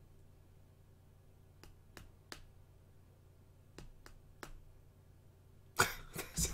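Sharp clicks in two groups of three, each about a third of a second apart, over quiet room tone; a man bursts out laughing near the end.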